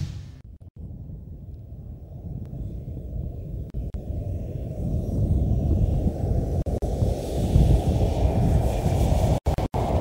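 Ford Ranger pickup driving hard across snow, a rumble of engine and tyres mixed with wind on the microphone that grows steadily louder as the truck nears. It cuts off sharply twice just before the end.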